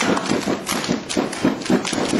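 A seated group of performers clapping and slapping their hands in unison, a fast run of sharp claps at about six a second.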